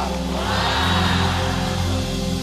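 Live church band music: held keyboard chords over a deep bass, with a swell of voices about half a second in.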